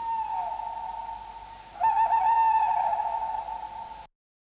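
Eerie, spooky sustained high tones in a cartoon soundtrack. One tone is held steady while another slides down beneath it at the start, and a louder wavering tone comes in about halfway and slowly sinks in pitch.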